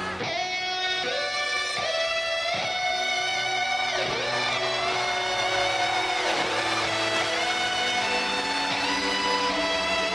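Electric guitar playing a slow lead melody of long sustained notes with pitch bends, over a backing, in the intro of a live rock concert.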